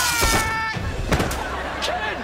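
Electric blast sound effect with a falling, wailing cry as a character is zapped, then sharp knocks a little over a second in as he goes down.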